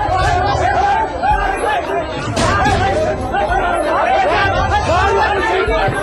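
A crowd of many people shouting and talking over one another in a packed, jostling scrum.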